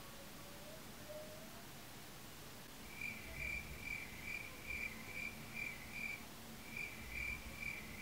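A faint, high-pitched pulsing tone coming from a neighbour's home, about two and a half short pulses a second. It starts about three seconds in, pauses briefly near the six-second mark, then carries on, over a low rumble.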